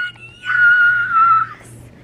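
A woman's high-pitched excited squeal, held on one steady note: a short one right at the start, then a longer one of about a second.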